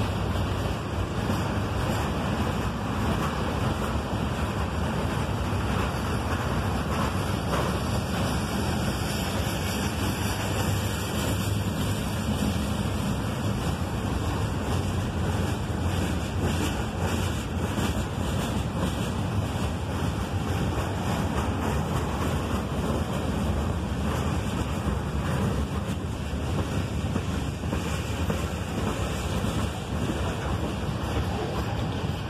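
Freight train cars (boxcars and covered hoppers) rolling past: a steady rumble of steel wheels on the rails, with faint irregular clicks.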